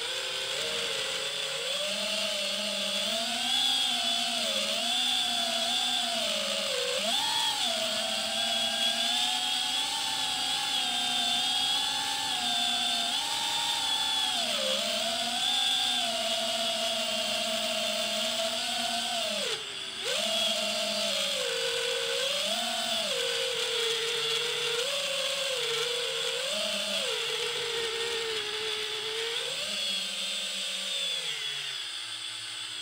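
FPV freestyle quadcopter's motors and propellers whining, the pitch rising and falling constantly with the throttle. The sound drops out briefly about twenty seconds in, and the pitch slides down at the very end as the throttle comes off.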